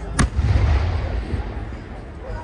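An aerial firework bursting: one sharp bang a moment in, followed by a low rolling rumble that fades over about a second.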